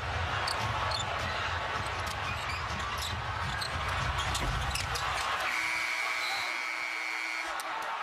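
Basketball arena sound of crowd noise with sharp clicks from the ball bouncing on the hardwood. About five and a half seconds in, the horn sounds for about two seconds as the game clock runs out at the end of overtime.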